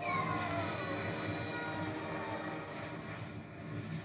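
Sound effects from a children's cartoon heard through a television's speakers: a sudden rushing crash with a few falling whistle-like tones at the start, running on as a steady loud rushing noise.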